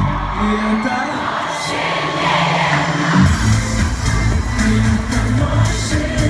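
Live pop concert music, recorded from inside the audience in a large hall. The bass drops out for about three seconds while the crowd cheers, then the full beat comes back in.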